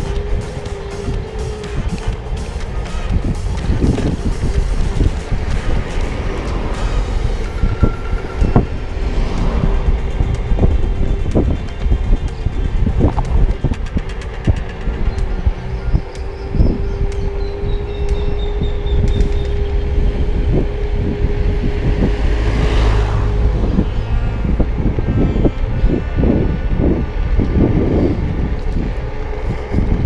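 Wind buffeting the microphone and road rumble from a moving 350 W electric scooter, with a steady whine from its motor that stops about three-quarters of the way through. Sharp knocks and rattles from bumps in the road come throughout.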